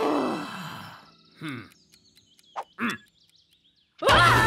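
Wordless cartoon character vocal sounds: a long groan sliding down in pitch at the start, then three short falling grunts between about one and a half and three seconds in, with faint small clicks between them.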